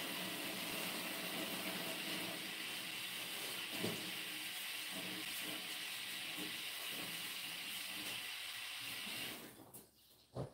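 Tap water running into a sink as hands are washed, with a few light knocks; the water is shut off shortly before the end.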